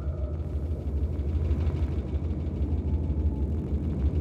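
Steady low mechanical rumble from the animation's sound-effect track, a machine-like drone for the molecule moving along the DNA. Faint thin tones sit above it.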